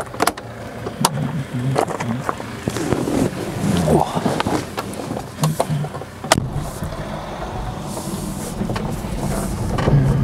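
Door handle clicks and door knocks on an electrically converted 1969 Porsche 911 as it is opened, entered and shut, the loudest knock about six seconds in. Then a rising hiss of tyres on gravel as the car pulls away with no engine sound.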